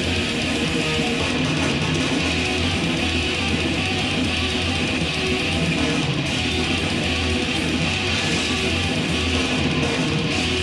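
Heavy metal recording with distorted electric guitars playing back at a steady loud level: a dense, wall-of-sound mix with no dynamics.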